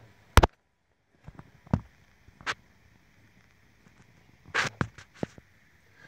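Handling noise in the engine bay: one loud sharp click about half a second in, then scattered softer clicks, knocks and rustles, with a small cluster near the end.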